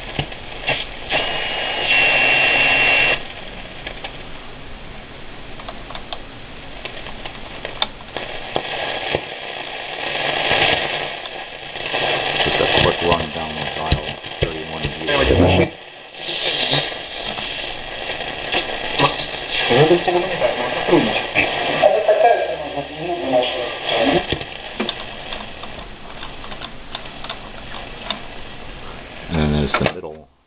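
A restored 1938 Montgomery Ward Airline 62-1100 eleven-tube console radio being tuned across the shortwave band. It gives steady static and hiss, a steady high whistle in the first few seconds, and faint, fading snatches of distant stations' voices as the dial moves.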